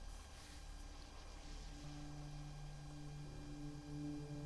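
Electric guitar in drop D tuning playing soft, sustained notes that fade in gradually about a second in, a low note and a higher one held and growing, over a steady amplifier hum.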